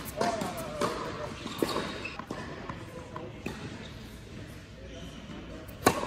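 Tennis balls struck by rackets and bouncing on an indoor hard court during a doubles rally: a sharp pock roughly every second, with reverberation from the hall. The loudest hit comes near the end.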